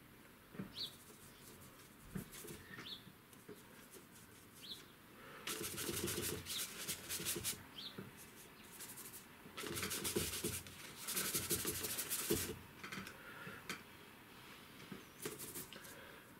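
Flat paintbrush scrubbing acrylic paint on paper, mixing on the palette and laying it on, in several scratchy bursts lasting a second or two each, the longest a few seconds apart.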